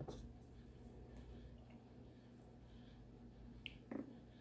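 Near silence: quiet room tone with a steady low hum, broken by a few faint small clicks and, near the end, a sharper click and a short knock.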